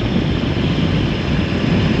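Motorcycle riding at steady road speed on tarmac, heard from on the bike: a steady, even rumble of engine, wind and road noise with no changes.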